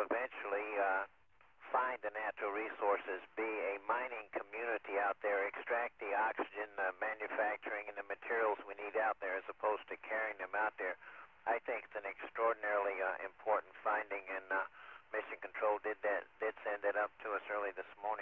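Speech only: a man talking continuously, heard through a narrow-band radio link.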